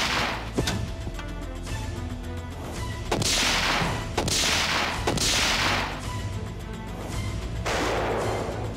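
Three pistol shots about a second apart, each with a long echoing tail, over a low, steady film score.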